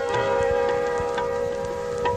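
Harmonium holding a steady chord of several sustained notes through a pause in the singing, with a few light drum strokes beneath.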